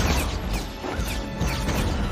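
Animated battle soundtrack: crashes and impacts over score music.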